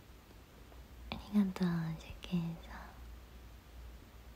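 A young woman's voice murmuring softly under her breath: three short syllables a little after a second in, with small mouth clicks.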